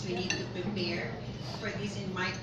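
A person talking, with light clinks of dishes and cutlery.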